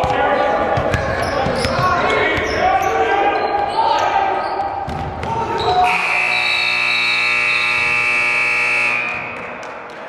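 Gym scoreboard buzzer sounding one steady, loud blast of about three seconds, starting about six seconds in as the game clock hits zero: the end-of-period horn. Before it, voices shout over a basketball being dribbled on the hardwood in a large, echoing gym.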